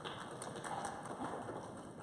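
Quiet auditorium room noise, with a few faint light knocks and shuffles from performers moving about the stage.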